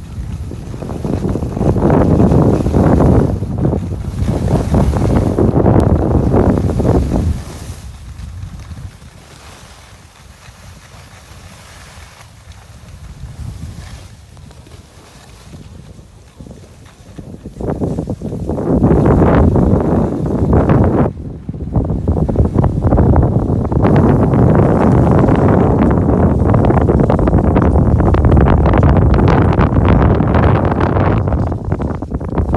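Wind buffeting the microphone of a camera carried by a skier going downhill. It is loud at first, dies down for about ten seconds in the middle, then comes back loud.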